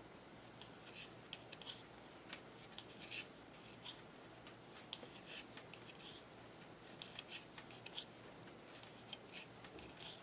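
Faint, irregular soft clicks and rustles of wooden knitting needles and yarn as stitches are purled one after another.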